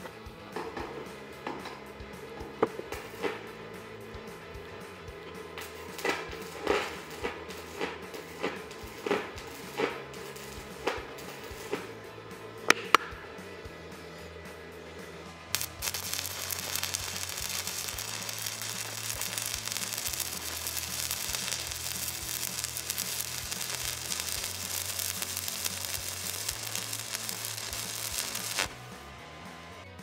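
Stick-welding arc from a 120 A inverter arc welder: for the first half, short separate crackles as the electrode is lowered to the steel and dragged back to strike and warm it, then about 15 seconds in the arc catches and holds as a steady crackling sizzle that cuts off near the end. Background music plays underneath.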